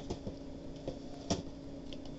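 A few faint, short clicks and taps from carded diecast toy cars being handled, the loudest about two-thirds of the way through.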